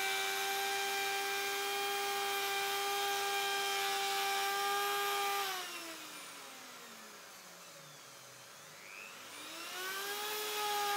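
Electric plunge router running at a steady high whine. About five and a half seconds in it is switched off and winds down, falling in pitch for about three seconds, then is switched back on and spins up to full speed near the end.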